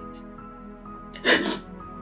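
Soft background score of sustained notes, with a woman's sudden loud, breathy sob about a second in.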